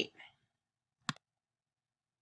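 A single short, sharp click about a second in, with near silence around it.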